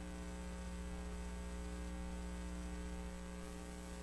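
Steady electrical mains hum with a stack of evenly spaced overtones, on an otherwise empty audio line.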